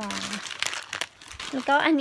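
Plastic food packets crinkling as they are handled, in a quick crackling run between bits of speech.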